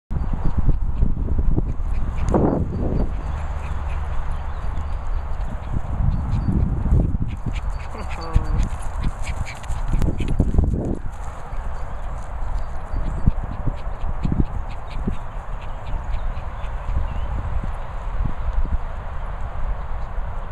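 A Doberman and a Bichon Frise playing over a steady low rumble, with louder bursts of dog noise about two, six and ten seconds in.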